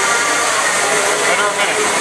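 Steady whirring of beetleweight combat robots' spinning weapon motors, with no impacts, over faint background voices.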